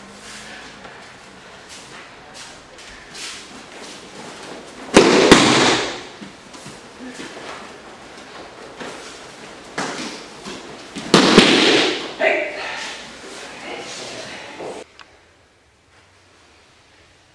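Loud kiai shouts from a paired wooden-sword (bokken) kata: one about five seconds in and another about eleven seconds in, followed by a shorter one, each starting with a sharp crack.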